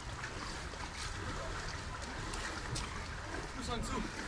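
Running river water, with light, scattered splashes as a négo-chin, a narrow flat-bottomed wooden boat, is paddled and pushed through the current by a man wading alongside.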